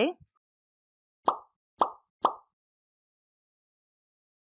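Three short pop sound effects, about half a second apart, starting a little over a second in, with near silence around them.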